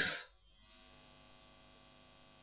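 A woman's voice trails off right at the start, then near silence with a faint, steady electrical hum.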